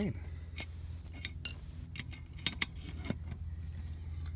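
Short steel chain clinking as it is handled and hooked onto a winch's steel stake bracket, with a long steel nail knocking against the links: about six sharp metallic clicks spread across a few seconds.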